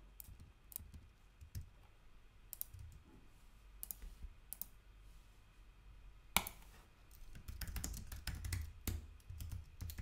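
Computer keyboard typing and clicks: a few scattered keystrokes at first, one sharper click about six seconds in, then a quick run of typing over the last few seconds.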